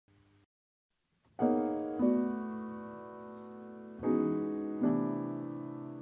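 Grand piano playing slow chords, four struck in turn and each left to ring and die away slowly. Near silence before the first chord.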